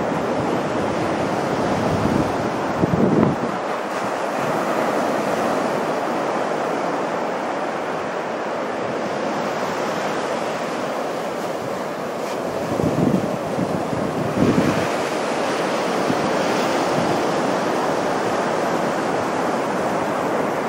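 Small ocean waves breaking on the beach and washing up the shore in a steady rush of surf. Offshore wind buffets the microphone in low rumbling gusts about three seconds in and again around thirteen to fifteen seconds.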